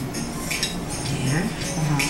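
Metal kitchen utensils clinking, with faint background music underneath, heard through a television's speaker.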